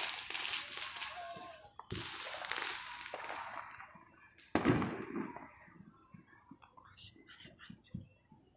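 Fireworks going off: two loud bangs about two and a half seconds apart, each trailing off in a long echo, followed by a few fainter pops near the end.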